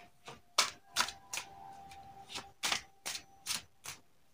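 A tarot deck being shuffled by hand: a string of sharp, irregular card slaps and clicks, about ten in four seconds.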